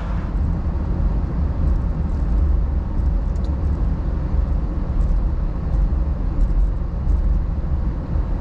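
Steady low rumble of engine and road noise inside the cabin of a moving car.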